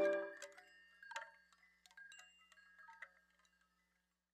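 Background music dies away in its last ringing notes, leaving a few faint, scattered chime-like tinkles, then near silence.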